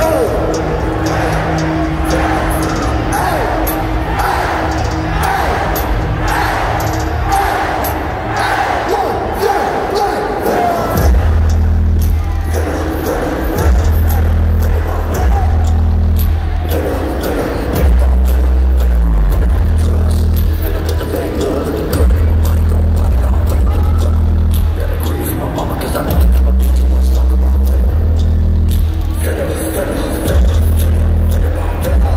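Loud live concert music through an arena PA, heard from the crowd, with rapped or shouted vocals. About 11 seconds in, heavy sub-bass notes drop in and repeat in long blocks.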